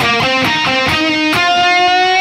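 Electric guitar playing a slow run of single notes from the E-flat major pentatonic scale, picked with downstrokes, each note struck cleanly. The run ends on one long sustained note that rings through the second half.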